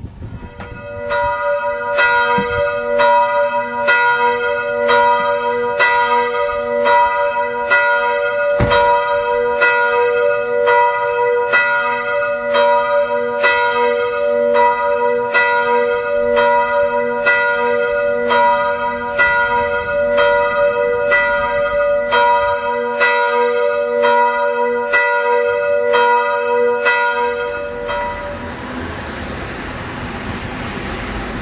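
Church bell ringing steadily, about one stroke a second, each stroke ringing on into the next. The ringing stops a few seconds before the end.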